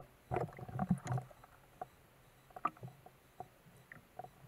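Underwater water sounds picked up by a submerged camera: irregular gurgling and knocking in the first second or so, then scattered short clicks.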